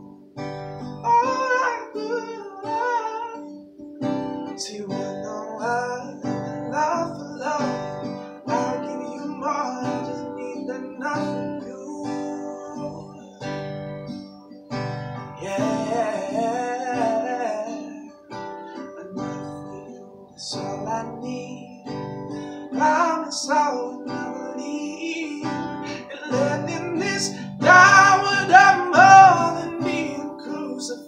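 A man singing while playing chords on an acoustic guitar, his voice growing louder near the end.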